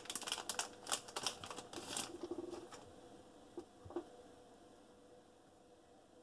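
Crackling plastic and cardboard as a trading card's packaging (a clear plastic bag, a rigid toploader and a cardboard insert) is handled and opened: a quick run of small clicks and crinkles for the first two to three seconds, then near quiet with two faint taps.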